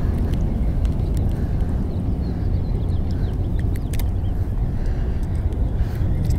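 Wind buffeting the chest-mounted camera's microphone as a steady low rumble, with a few faint clicks and faint chirps over it.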